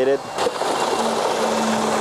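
Concrete pump running as concrete is fed through its hose into insulated concrete form walls: a steady rushing machine noise, with a steady hum joining about halfway through.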